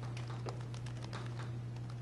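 Chalk tapping and scraping on a chalkboard as a diagram is drawn, a scatter of small ticks, over a steady low hum.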